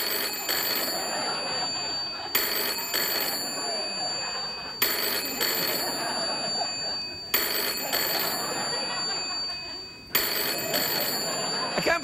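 Telephone ringing: five rings about two and a half seconds apart, left to ring unanswered.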